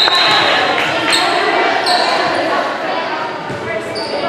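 Echoing gymnasium hubbub of voices, with short high squeaks of athletic shoes on the hardwood floor and the knocks of a ball bounced on the floor.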